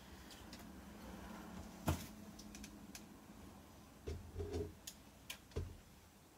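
Faint handling sounds in a small room: a low electrical hum that stops with a sharp click about two seconds in, then a few soft knocks and thumps as guitars and gear are moved.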